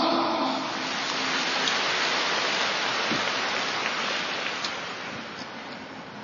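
Audience applauding, loudest at first and then dying away steadily.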